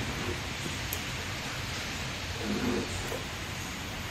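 Steady, even background noise of a factory floor, with a single faint click about a second in.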